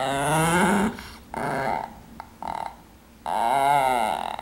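A Chihuahua growling in four bursts with short pauses between, guarding the chew toy in its mouth.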